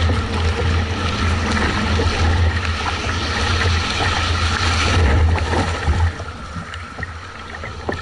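Water rushing and splashing around a Nelo Viper 46 surfski's hull as it rides the breaking wake of a passenger ship, with paddle-blade splashes, over a low steady rumble. The rush and rumble drop away about six seconds in.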